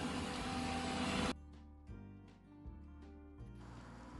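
Electric drill running steadily and cutting off abruptly a little over a second in, followed by faint soft music with held notes.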